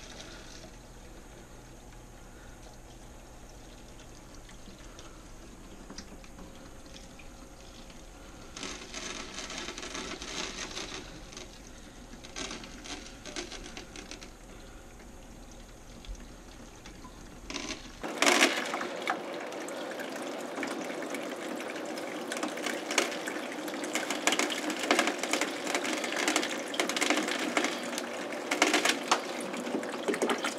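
Aquarium siphon hose sucking sand and water out of a fish tank and draining it into a bucket: a steady run of water, which turns louder and more crackly about two thirds of the way through.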